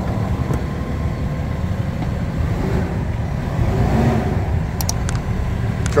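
The Cummins ISL9 diesel engine of a 2015 Freightliner Sportschassis idling, a steady low rumble heard from inside the cab, swelling slightly about four seconds in. A few faint clicks come near the end.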